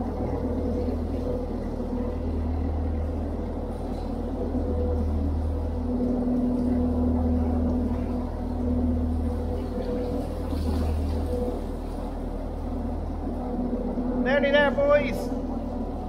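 Narrowboat diesel engine running steadily inside a brick canal tunnel: a low, even rumble with a hum that swells gently about every two seconds. A man's voice speaks briefly near the end.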